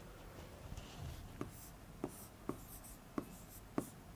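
Writing on a board: faint scratching strokes and about five short, sharp taps as the writing tip meets the board, spaced roughly half a second apart.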